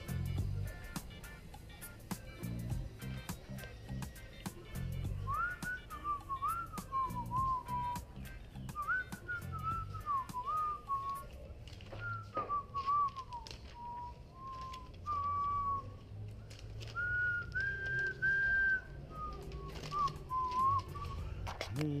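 A person whistling a tune in short gliding phrases, starting about five seconds in and stopping near the end, over background music.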